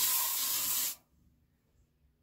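Aerosol room-spray can (Homeline Scents Spiced Pumpkin) sprayed once into the air: a loud hiss lasting about a second that cuts off sharply.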